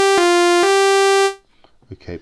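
AddStation additive synthesizer app playing one bright held note, rich in overtones, in C minor pentatonic with quantize on. The pitch jumps in clean steps from note to note rather than gliding, changing twice, and the note stops a little over a second in.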